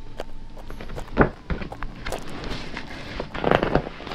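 A few scattered soft knocks with light rustling, the loudest about a second in, as a large picture book's page is handled and turned near the end.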